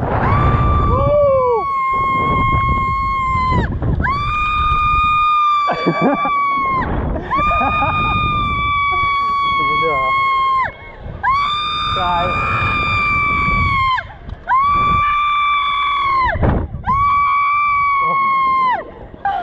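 A rider screaming on a slingshot ride, about six long high-pitched held screams of two to three seconds each with short breaks for breath. Wind rumbles on the microphone underneath.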